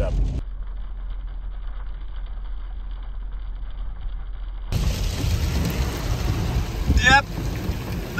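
Car driving in heavy rain, heard from inside the cabin: a steady, muffled road and engine rumble, then from about five seconds in a louder, hissier rush of wet tyres and rain on the glass. A brief high sound stands out about seven seconds in.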